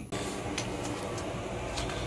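A steady mechanical hum, with a few faint ticks.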